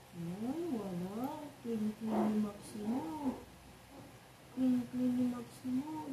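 A woman humming a slow, wandering tune in a low voice, sliding up and down between a few held notes.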